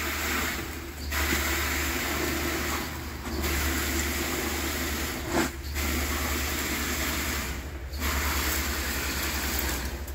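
Concrete pump running, pushing concrete through its hose into the wall forms: a steady low drone with the rush of concrete in the line, dipping briefly about every two seconds as the pump changes stroke.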